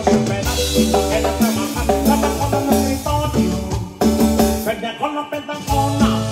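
Live cumbia band playing: a repeating electric bass line, keyboard melody and drums, with the bass and drums dropping out briefly about five seconds in.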